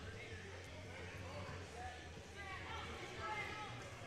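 Faint, scattered voices echoing in a large gym hall, over a low steady hum.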